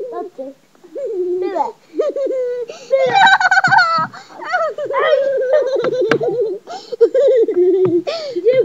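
Children giggling and laughing, their high voices rising and falling throughout, with a louder burst of laughter about three seconds in.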